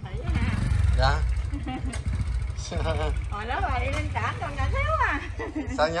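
A motor scooter's engine idling steadily, with people's voices talking over it.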